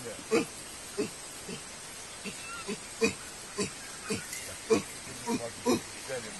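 A chimpanzee giving a steady run of short grunts, about two a second.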